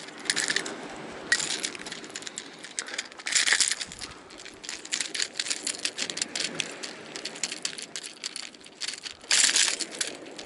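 Metal tools and lure hooks clicking and rattling in quick, uneven runs as a metal lure is worked out of a little tunny's mouth. Three louder scraping bursts come near the start, midway and near the end.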